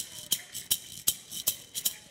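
Hand rattle shaken in a steady beat of sharp shakes, about five or six a second. It is the beat the Choctaw use to open a gathering, the signal that it is time to come together.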